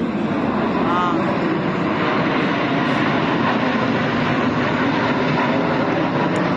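Jet engines of a formation of military jets passing overhead, a loud steady noise throughout, with people talking nearby.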